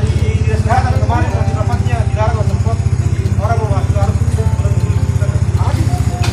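A small engine running steadily nearby, a loud low throb with an even rapid pulse that does not change.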